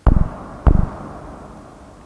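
Two deep thuds about 0.7 seconds apart, the first at the very start; each is heaviest in the bass and dies away over a fraction of a second.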